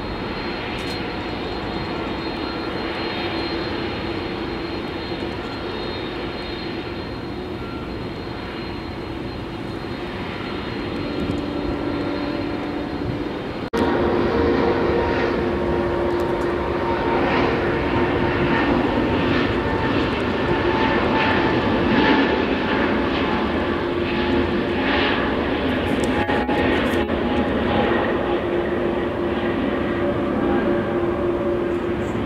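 Jet airliner engines running steadily with a whine: first a McDonnell Douglas MD-11 trijet, then, after an abrupt cut about 14 s in, a louder Airbus A330 taxiing.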